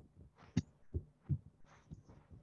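Short, uneven taps of a writing tool on a writing surface, about two or three a second, made while a diagram is being drawn.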